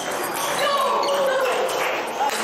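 Table tennis rally: the ball knocking off the paddles and bouncing on the table, over a background of voices in a large hall.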